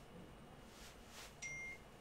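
A short electronic notification beep, a single high tone lasting about a third of a second, about a second and a half in, over quiet room tone.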